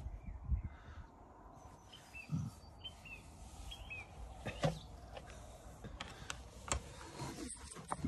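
A few short, faint chirps of small birds in the middle of the stretch, over low rustling and several soft thumps.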